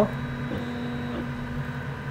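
Flashforge Dreamer dual-extruder 3D printer running mid-print: a steady hum from its print-head fans and moving mechanism, with a steady tone coming in about half a second in.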